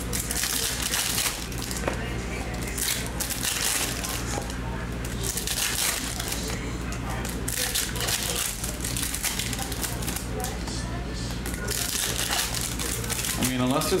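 Foil trading-card pack wrappers crinkling in repeated short bursts as packs are torn open and handled, over a steady low hum.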